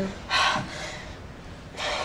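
A woman's short, breathy gasp about half a second in, followed near the end by a quieter breath in.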